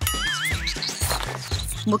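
A short warbling, whinny-like sound effect, its pitch wavering up and down for about half a second at the start. It plays over background music with a steady beat.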